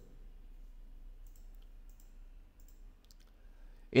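Quiet room tone with a low steady hum and a few faint, scattered clicks of a computer mouse.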